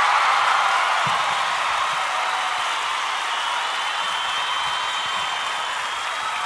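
A steady, even rushing noise that fades slowly.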